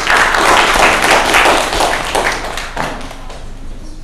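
Audience applauding, strongest in the first couple of seconds and tapering off toward the end.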